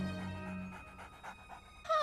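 Cartoon soundtrack: a dog-like cartoon dinosaur panting over soft background music, with a wavering voice-like sound coming in just before the end.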